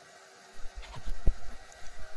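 Low thuds and rumbling, starting about half a second in, with one sharper knock a little past the middle.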